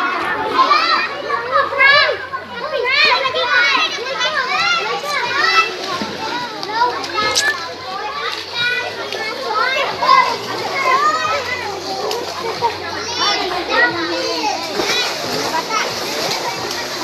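A group of children shouting and squealing as they play in a swimming pool, many high-pitched voices overlapping throughout.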